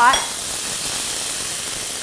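Bite-sized chicken pieces searing in hot vegetable oil in a stainless steel skillet, a steady sizzle while they are pushed around with a wooden spoon. The oil is hot enough to sear the meat quickly.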